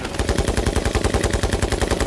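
A machine gun fires one long burst of rapid, evenly spaced shots.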